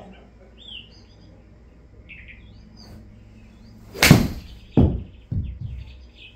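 A golf club striking the ball off a simulator hitting mat with a sharp crack about four seconds in, followed by two duller thuds within the next second and a half.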